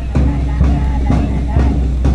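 Band march music with a steady drum beat, about two beats a second, played for players marching in step.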